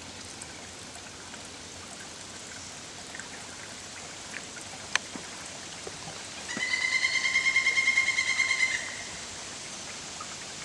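Steady trickle of running water from a small woodland stream. Past the middle, a loud buzzy trill from a calling animal pulses for about two seconds, and just before it comes a single sharp click.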